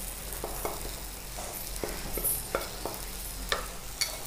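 Dried fish, shallots and curry leaves frying in a wok, a low steady sizzle with scattered light ticks as a wooden spatula stirs the pan.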